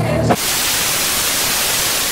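Rock music cuts off abruptly about a third of a second in, replaced by loud, steady television static hiss, the sound of a TV screen showing snow.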